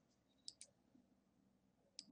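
Faint computer mouse clicks in near silence: two quick clicks about half a second in and another at the very end.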